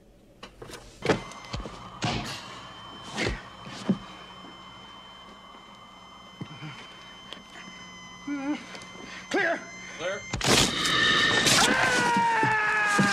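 Film sound effects of a defibrillator in use: a steady high electronic whine from the unit with several heavy thunks as the paddles discharge into the chest. About ten seconds in, a sudden loud burst of sound with shrill falling tones as the chest splits open.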